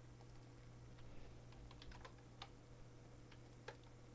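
Faint computer keyboard keystrokes and mouse clicks, a scattered handful of soft clicks, over a steady low hum.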